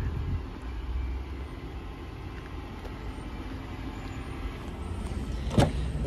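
Steady low vehicle rumble, with one sharp click near the end.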